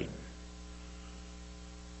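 Steady electrical mains hum, a low drone with evenly spaced overtones, under a faint hiss.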